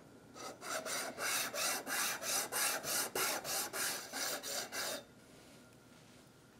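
Small plastic 3D print rubbed back and forth across an old flat steel file, rasping about three strokes a second as it files away the print's 0.1 mm first layer. The strokes stop suddenly about five seconds in.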